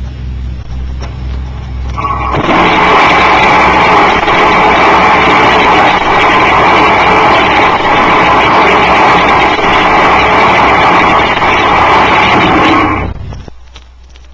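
Turbonique Model 12T monopropellant thrust engine firing on a static test stand, its high-velocity exhaust jet discharging straight into the open air with no thrust-augmenting ejector. After a low hum, it comes on suddenly about two seconds in and runs very loud and steady, with a steady tone in the noise, for about eleven seconds. It stops about a second before the end.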